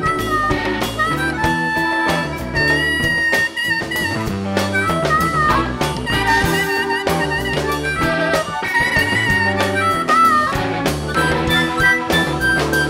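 Live blues-rock band playing an instrumental passage: a lead line of long, bending notes over electric bass and a drum kit.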